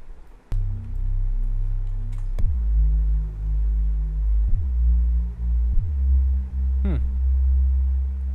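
Arturia Pigments synth bass playing a slow line of low, sustained notes that follows the bass notes of the piano chords, changing pitch three times. It starts about half a second in and is a subtle, mellow bass for a lo-fi beat.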